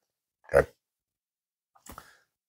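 A man's single short, low spoken "okay" about half a second in, then silence, with a faint mouth sound near the end.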